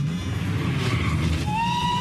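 Film trailer sound effects: a steady low rumble, joined about one and a half seconds in by a high, steady whistling tone.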